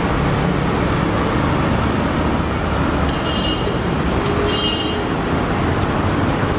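Steady street traffic noise with a low rumble. Two short high-pitched tones come through, about three seconds in and again about four and a half seconds in.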